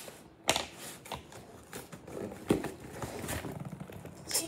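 Hands handling and pulling at a parcel's packaging: irregular rustling and scraping with sharp knocks, the loudest about half a second in and again about two and a half seconds in.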